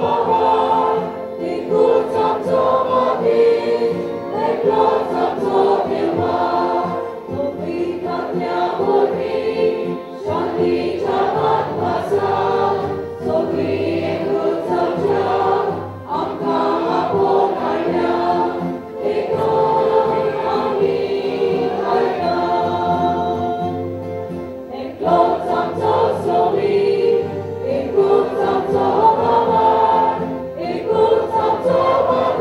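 Mixed church choir singing a hymn through microphones, with guitar accompaniment, in phrases with brief breaks between them.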